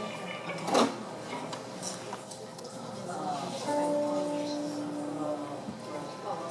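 A single knock about a second in, then an electric guitar through its amp sounding one steady note held for about two seconds, in a quiet room with faint murmur.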